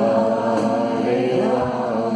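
Live kirtan chanting: voices singing a devotional chant together, held sung notes over acoustic guitar and a hand drum.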